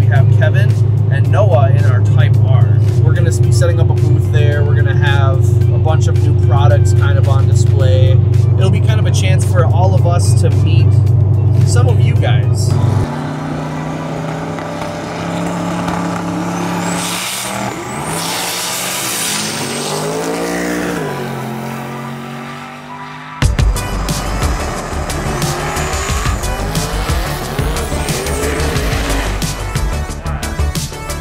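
Music with singing over a heavy, steady bass for the first dozen seconds. Then drag cars at the strip: an engine revs up and falls away with tire squeal, and near the end a loud low engine rumble comes in.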